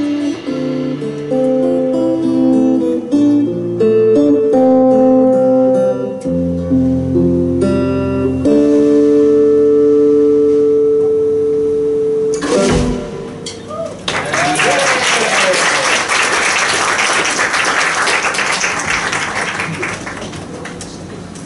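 Live rock band with keyboard, guitars, bass and drums playing the last bars of a song, ending on a long held chord cut off with a final hit. About a second and a half later the audience starts applauding and cheering.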